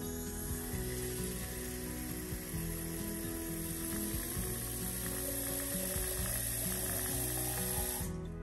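Tap water running from a pull-down kitchen faucet into a ceramic watering can, a steady splashing hiss, with a faint tone rising in pitch through the second half as the can fills. Soft background music plays underneath.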